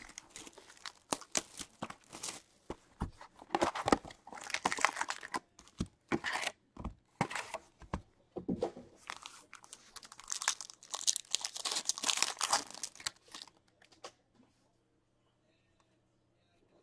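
Trading-card box and foil card packs being opened by hand: an irregular run of tearing, crinkling and rustling with small clicks, which stops about 14 seconds in.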